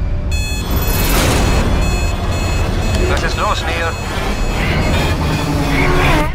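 Film trailer sound design: a loud low rumble layered with sustained music tones, with brief voice-like gliding sounds midway, swelling to its loudest near the end and then cutting away.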